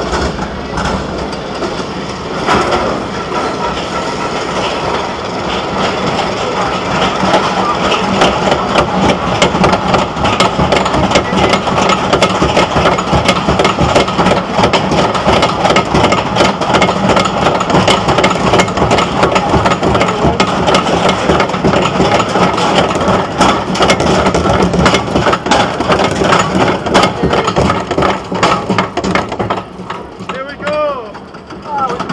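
Arrow suspended roller coaster train being pulled up its chain lift hill. The lift chain and anti-rollback ratchet make a rapid, continuous clacking over a steady mechanical hum, which grows louder from about seven seconds in.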